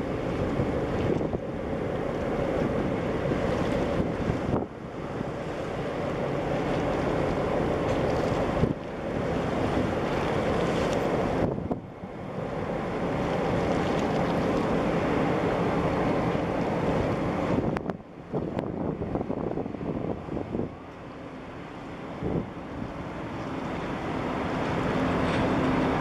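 Wind buffeting the microphone in gusts over choppy open water, with a low steady engine drone beneath it. The wind noise drops away abruptly several times and then comes back.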